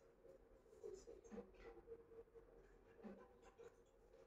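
Near silence: room tone with a faint steady hum and a few soft, scratchy ticks.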